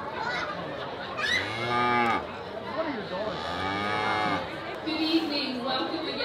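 Cows mooing twice, each moo a drawn-out call that rises and falls in pitch, the second longer than the first, over the chatter of a crowd.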